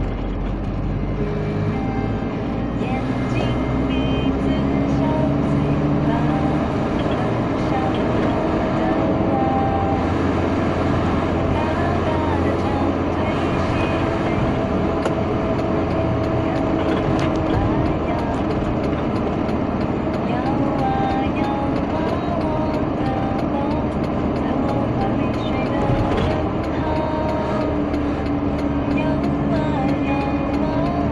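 A song playing on the car radio, with a wavering melody line, over the steady low rumble of the car's engine and tyres heard inside the cabin.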